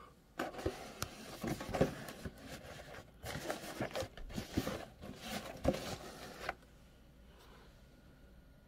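Cardboard box handled and turned over close by: a run of cardboard rubbing and scraping with light knocks, lasting about six seconds and stopping near the end.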